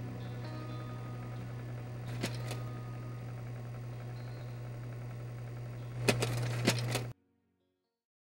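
Steady low hum with faint tones above it, a couple of clicks about two seconds in and a louder burst of crackling clicks near the end, then the sound cuts off suddenly.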